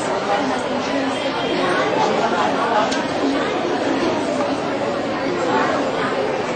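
Many people talking among themselves at once in a large hall, a steady murmur of overlapping voices with no one speaker standing out.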